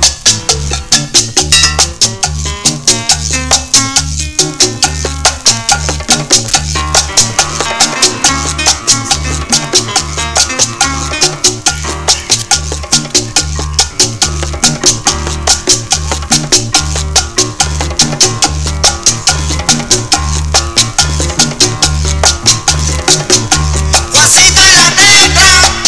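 Latin tropical dance music (salsa) played loud over a sonidero's sound system, with a steady beat and a deep bass line.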